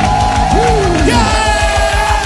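Nigerian gospel music playing: voices glide up and down over a steady low beat.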